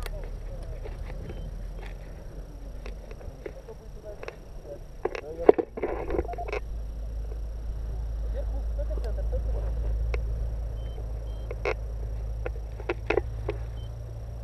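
Wind rumbling on the camera microphone, growing louder about halfway through. Scattered clicks and knocks of harness and gear handling, and a brief burst of voices, sound over it.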